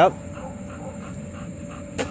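Quiet backyard background with faint distant voices and a thin steady high tone, after a voice that cuts off at the very start. Right at the end a toddler's plastic bat knocks once against a piñata.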